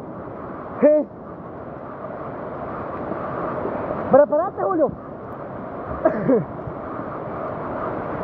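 Flash-flood water rushing down a swollen, rocky river channel: a steady rush of water that grows slightly louder. Short shouted voices break in about a second in, around four seconds and near six seconds.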